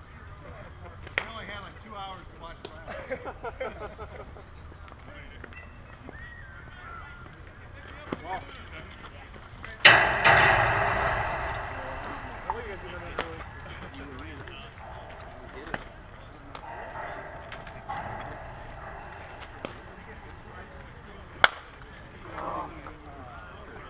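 A loud bang about ten seconds in with a rattling ring that fades over a few seconds, then near the end the sharp crack of a softball bat hitting the ball.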